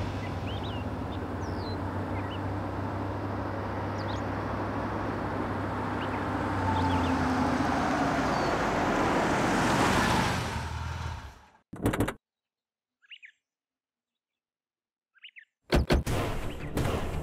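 Small birds chirping over the low, steady hum of a car, likely the Toyota Innova, which grows louder as it pulls in and then fades out about eleven seconds in. A short knock follows, then near silence with a couple of faint chirps, and a sharp sound just at the end.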